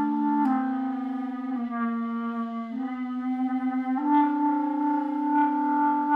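Clarinet played while the player sings one held note into the instrument at the same time, a klezmer technique; the sung tone sounds together with the clarinet. The clarinet changes note about four times, roughly every second.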